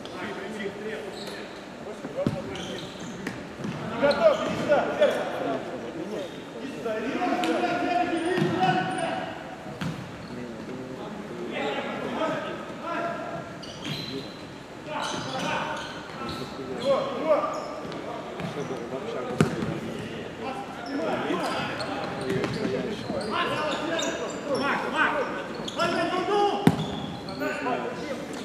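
Futsal game sounds in a large sports hall: players' shouts and calls echoing, with sharp thuds of the ball being kicked and bouncing on the wooden floor.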